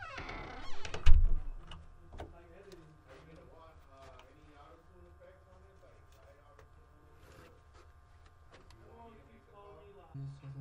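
A heavy door, plausibly the vocal booth's, swings shut: a short falling squeak, then a heavy low thud about a second in. Faint muffled voices follow.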